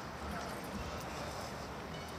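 Open-air ambience of a football training session: faint distant voices of players and a few soft thuds of footballs being kicked over a steady background hiss.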